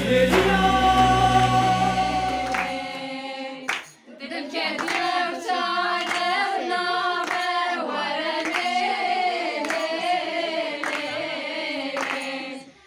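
A short stretch of synthesized intro music with sustained tones over a low bass drone, which breaks off at about four seconds. Then a group of women sing a Kurdish song together in unison, accompanied by hand claps.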